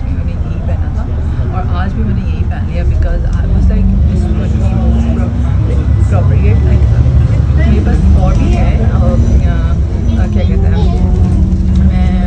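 Bus engine and drivetrain droning inside the passenger cabin, a low steady rumble whose note climbs slowly in pitch twice as the bus drives on, with voices talking in the background.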